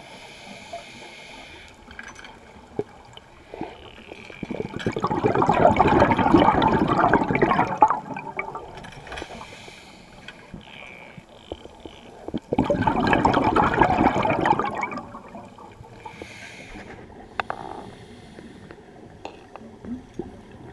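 Scuba diver's exhaled air bubbling out of the regulator, heard underwater: two long bubbling bursts of about three seconds each, some eight seconds apart in the rhythm of breathing, with a quieter underwater hiss and a few faint clicks between them.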